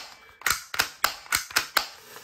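A series of about six sharp plastic clicks, three or so a second, from an Academy G19 spring-powered airsoft pistol being handled and worked in the hands.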